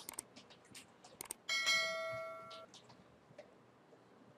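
A few soft keyboard key clicks as a file name is typed, then about a second and a half in a single bell-like electronic chime that starts suddenly and fades away over about a second.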